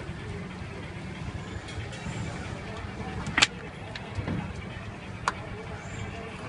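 Steady low rumble of street traffic, with two sharp knocks about two seconds apart in the second half.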